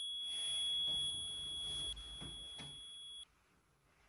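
A steady, high-pitched electronic ringing tone that cuts off suddenly about three seconds in, with a faint low rumble beneath it.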